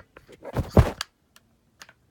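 Handling noise of a phone being set down on a bed: a loud rustle and thump against the microphone about half a second in, then a few light clicks.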